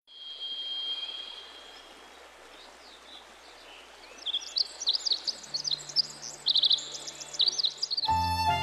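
Songbirds chirping over a steady outdoor hiss, with a thin steady high note at first and the chirps growing busier from about four seconds in. A low held tone joins about halfway through.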